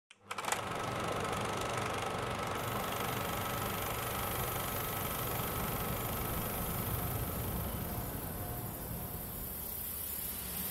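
Motor vehicle engine running steadily, a low rumble with a faint high whine, starting abruptly and easing off slightly near the end.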